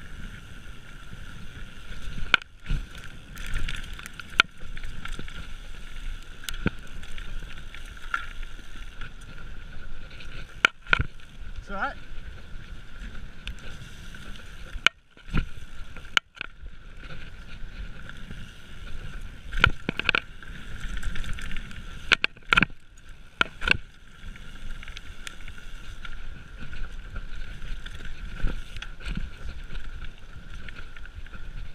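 A mountain bike ridden fast over a bumpy dirt trail: tyre noise and wind on the microphone, broken by frequent sharp knocks and rattles as the bike hits bumps and landings.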